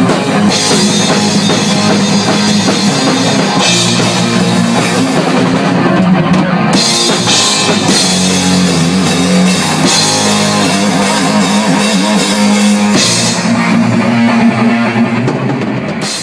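Heavy metal band playing: loud distorted electric guitar riffing over a drum kit, with cymbal crashes coming in and out in sections.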